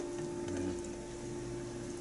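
Quiet room tone with a faint steady hum.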